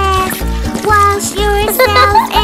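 A children's song: a voice singing the bath-time lyrics over a bouncy backing track with a steady bass beat about twice a second.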